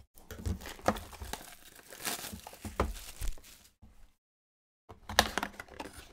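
A Topps Archives Signature Series trading-card box being torn open and its contents unwrapped: irregular cardboard tearing and paper and wrapper crinkling, with a short break about four seconds in.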